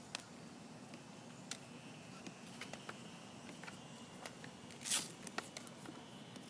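Scattered soft smacks and clicks of baseballs caught in bare hands and dropped onto infield dirt during a catcher's soft-hands drill, about one every second. The loudest smack comes about five seconds in.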